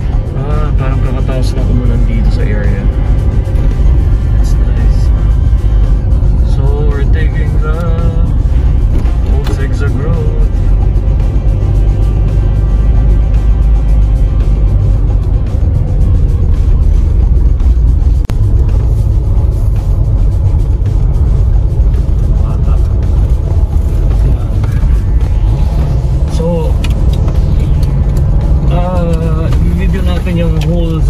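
Steady low rumble of a car's engine and tyres on the road, heard from inside the cabin, with music and a singing voice playing over it.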